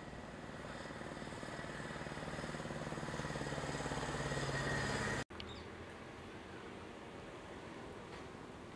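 A road vehicle's engine drawing closer and growing louder over about five seconds, then cut off suddenly by a break in the audio, leaving fainter steady outdoor background noise.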